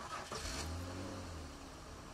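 A sharp knock, then a car engine starts about half a second in and settles into a steady idle.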